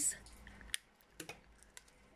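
Quiet tabletop handling while a piece of sticky tape is taken: a few light clicks, the sharpest about three-quarters of a second in.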